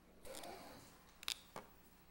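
Faint handling noise in a quiet room: a short rustle, then two small sharp clicks close together, the first the louder.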